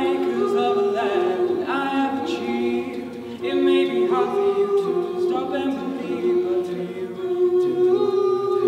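Male a cappella group singing: a lead voice carries the melody over sustained backing harmonies from the other singers. The full group comes in louder right at the start.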